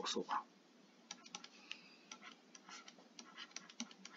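Faint, irregular clicks and taps of a stylus tip on a tablet screen during handwriting, starting about a second in.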